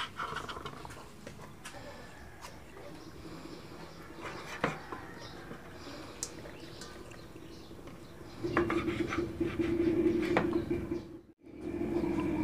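Kitchen knife cutting raw chicken gizzards on a bamboo cutting board, with scattered light knocks of the blade on the wood. In the last few seconds a louder steady low hum comes in, broken by a brief dropout near the end.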